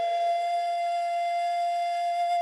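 Flute holding one long, steady note as the music opens.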